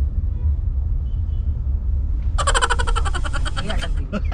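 Steady low road and engine rumble heard inside a moving car's cabin. About two and a half seconds in, a loud pulsing tone with many overtones comes in for about a second and a half and cuts off sharply.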